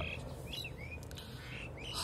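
A few short bird chirps in the background, over faint steady room noise.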